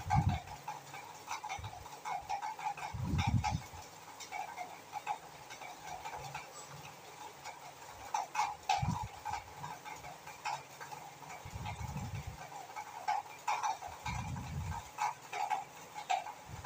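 Chicken pieces frying in oil in a pan, a faint sizzle with scattered small pops and crackles, and several low dull thuds spread through it.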